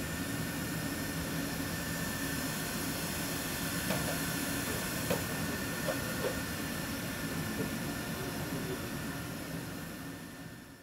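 Steady mechanical hum and hiss with a faint high whine, the running of the electric robot and the workshop around it, with a few light clicks about four to seven seconds in. It fades out near the end.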